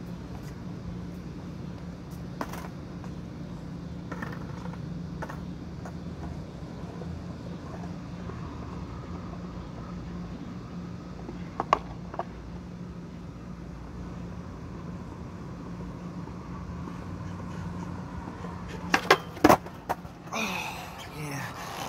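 Skateboard on concrete: a steady low hum throughout, two sharp clacks about midway, and a quick run of loud clacks near the end as the board comes up close.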